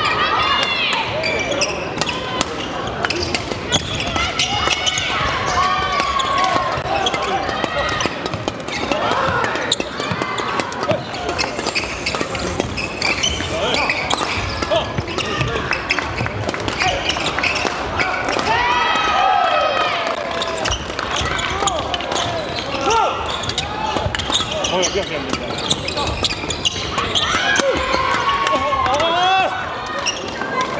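Badminton rackets hitting shuttlecocks in sharp clicks, court shoes squeaking on the wooden floor, and a constant hubbub of voices, all echoing in a large sports hall.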